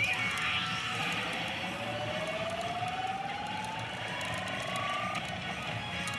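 Tom and Jerry themed pachinko machine playing an electronic effect: a single tone rising slowly in pitch for about four seconds, then cutting off suddenly, over steady machine din. A short swooping sound comes right at the start.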